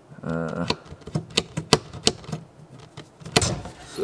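A run of about ten sharp, irregular clicks and knocks from a boat's hatch latch and lid being worked by hand, after a short grunt-like vocal sound at the start.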